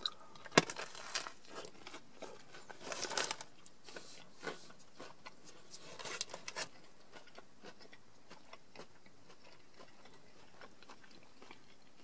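Biting and chewing a crunchy fried-chicken chalupa shell: irregular crisp crunches and clicks through the first half or so, then quieter.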